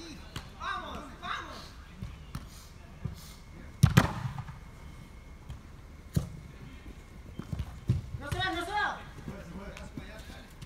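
Soccer ball kicked on an indoor turf pitch: one hard, sharp thud about four seconds in and lighter kicks later. Players shout between the kicks.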